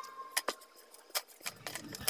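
About five light clicks and taps, spread unevenly, as a cut-out paper net and a plastic set square are handled and set down on a wooden tabletop.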